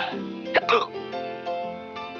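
Orchestral cartoon score playing, broken about half a second in by two quick, sharp vocal sounds from the cartoon villain, close together.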